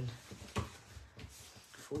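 Quiet handling of paper: a few soft crinkles and taps as a scored sheet of patterned paper is folded along its score lines into a box.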